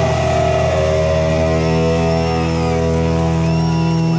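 Electric guitars and bass of a rock band holding one sustained final chord that rings on without a beat, with thin high whines wavering above it in the second half.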